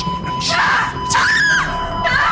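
A person screaming: two long, high, wavering cries, one starting about half a second in and the next just after a second, over background music.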